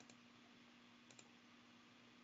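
Near silence with a faint steady hum and hiss, broken by a few faint clicks: one at the start and two in quick succession about a second in.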